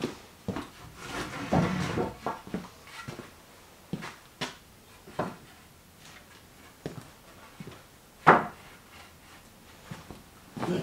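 Freshly sawn, wet ash boards being stacked on a shelf: a series of irregular wooden knocks and clacks as the boards are set down on the pile. The loudest knock comes near the end.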